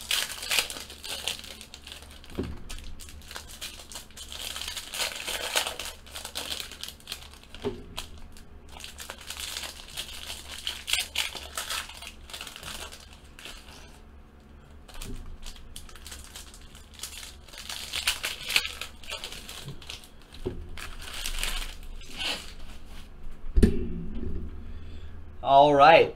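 Foil trading-card pack wrappers being torn open and crinkled by hand, in repeated bursts of crinkling with pauses between, and a few soft thumps. A voice starts near the end.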